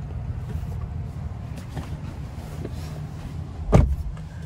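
Steady low rumble of wind and handling noise on a phone microphone as a person climbs into an SUV's second-row seat. A single loud thump near the end as he drops onto the seat.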